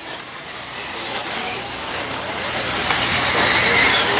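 1/8-scale electric RC off-road buggies racing on a dirt track: the whine of their electric motors and drivetrains mixed with the noise of tyres on dirt, growing steadily louder.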